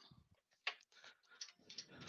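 Near silence with a few faint, short clicks and taps, spread over the two seconds.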